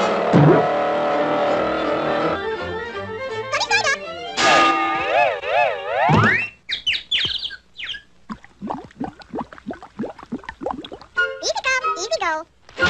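Cartoon soundtrack: orchestral music, then wobbling, wavering sliding tones about halfway through, followed by a run of short, quick pitch sweeps. The sweeps are high wordless chipmunk chatter.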